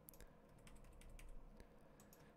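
Near silence with faint, scattered clicks from a computer keyboard and mouse being used.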